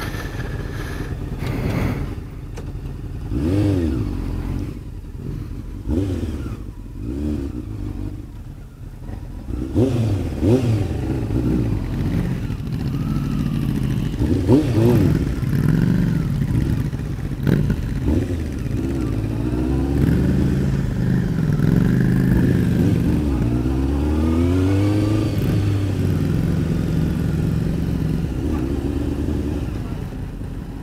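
Sport motorcycle engine idling with several short throttle blips, then pulling away and running slowly in low gear, its pitch stepping up and down with the throttle.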